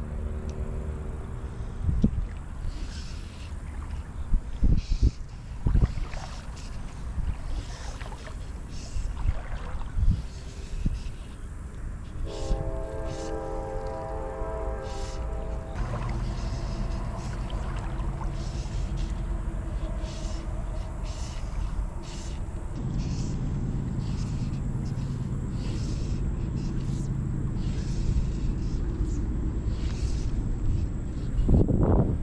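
Steady low rumble of wind gusts and road traffic, with scattered clicks from handling the fly rod and line. A held horn tone sounds for about three seconds midway.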